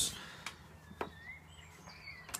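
Quiet room tone broken by two small sharp clicks, about half a second and a second in, and a faint short rising chirp.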